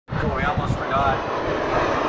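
A man's voice talking over a steady background noise, with low thumps underneath.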